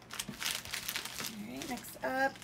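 Plastic packaging crinkling in several short bursts as a plastic mailer envelope is picked up and handled, followed near the end by a brief bit of voice.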